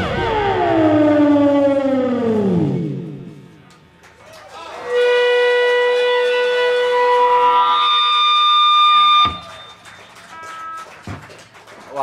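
A live rock band's electric instruments closing a song: a stack of tones glides steadily downward over the first few seconds and fades. After a short lull, a held chord of steady electronic tones sustains, shifts pitch once, and cuts off suddenly a little past nine seconds in.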